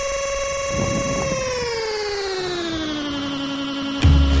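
Electronic soundtrack: a sustained buzzy synthesizer tone that holds steady, then slides down about an octave over roughly two seconds and settles on the lower pitch, like a downlifter leading into a drop.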